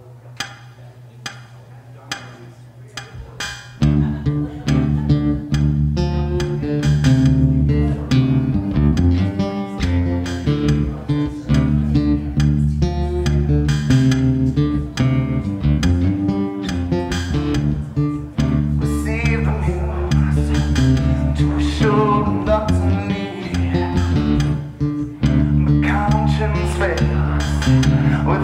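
Live rock-blues song intro on guitar with a looper. The first four seconds are quieter, a held low drone with a few picked notes. Then, about four seconds in, a loud groove with strummed guitar and a deep bass line comes in and keeps going.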